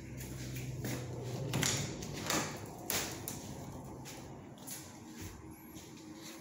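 Hinged interior closet door being opened: a few short clicks and knocks from the latch and door in the first three seconds, then quieter handling noise.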